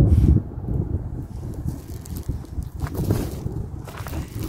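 Wind rumbling on the microphone, loudest in the first half-second and then lower and steady.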